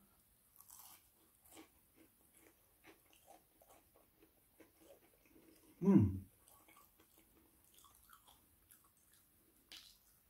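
Close-up chewing and biting of breaded fish and chips, with soft crunches and small wet mouth clicks throughout. One brief louder vocal sound, like a hum, about six seconds in.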